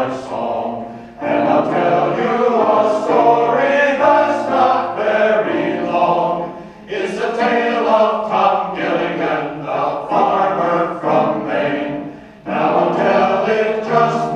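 Large mixed choir of men's and women's voices singing together, with short breaks between phrases about a second in, near the middle and near the end.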